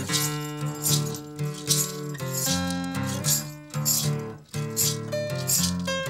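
Instrumental acoustic blues played on two strummed acoustic guitars, with a hand shaker keeping a steady beat of about three strokes a second.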